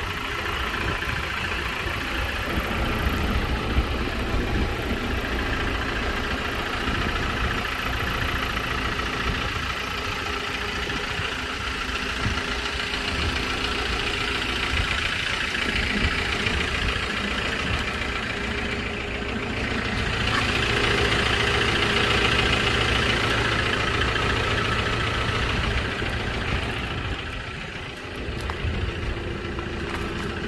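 Hyundai Porter II double-cab truck's diesel engine idling steadily.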